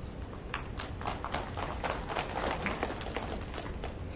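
Scattered handclaps from a small group, irregular sharp claps starting about half a second in and dying away near the end, over a steady low hall hum.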